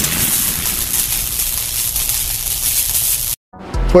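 Logo-animation sound effect: a long wash of noise trailing off a hit, fading slightly and cutting off suddenly a little over three seconds in.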